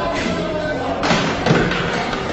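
A few heavy thuds and knocks, the loudest in the second half, with people's voices around them.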